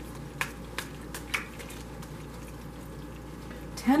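Tarot cards being handled and drawn from the deck: four or five short, sharp card clicks in the first second and a half, then only a faint steady hum.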